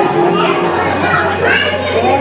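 Young children's voices chattering over background music with a steady held tone.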